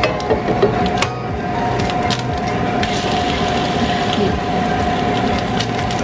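Spinach and vegan sausage frying in a pan, with a few sharp taps, the last one near the end an egg cracked on the pan's rim. A steady hum runs underneath.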